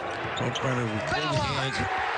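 Basketball being dribbled on a hardwood court, short repeated bounces under a commentator's voice.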